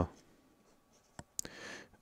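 A pen writing on paper: two light taps of the tip about a second in, then a short scratchy stroke.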